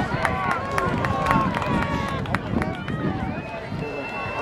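Several spectators' voices shouting and calling out over one another as runners pass on the track, with no clear words. A thin steady high tone comes in near the end.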